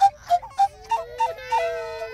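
Homemade bamboo pan pipes playing a bouncy tune of short breathy notes that hop between a few pitches, ending on a longer, lower held note, over a softer steady lower tone.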